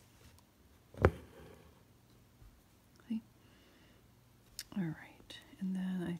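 A single sharp click about a second in, over faint handling noise, then from about three-quarters of the way through a woman's voice humming softly.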